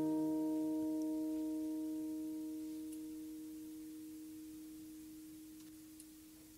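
The final acoustic guitar chord of a song ringing out and fading slowly and steadily to near nothing.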